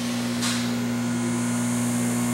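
Dynapower 200-amp 12-volt plating rectifier running under load into a load bank: a steady electrical hum over a soft rush of air. A brief soft rustle comes about half a second in.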